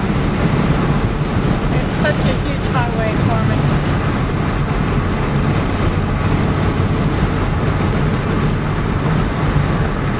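Steady road and engine noise of a car at highway speed, heard from inside the cabin: a low hum under an even rush of tyre and wind noise.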